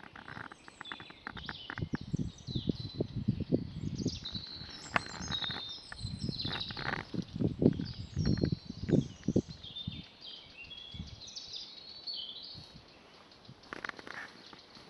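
Small birds chirping and singing throughout, with a run of low rustling thumps close to the microphone that are loudest in the middle and fade out after about ten seconds.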